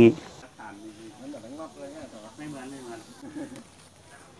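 A man's sentence ends right at the start, followed by faint voices of other people talking in the background.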